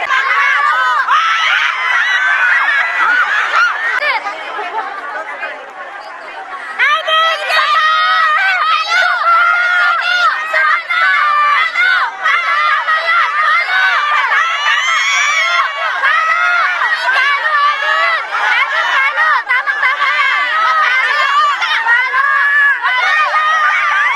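A crowd of spectators, mostly women, shouting, calling out and screaming all at once, many voices overlapping. The noise dips briefly about five to six seconds in, then rises to full volume again.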